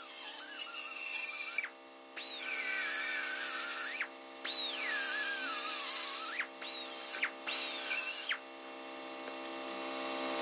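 Pneumatic air saw cutting through an aluminium trailer I-beam, stopping briefly about five times. At each restart its whine jumps up in pitch, then slides down as it cuts. Background music with steady held tones plays underneath.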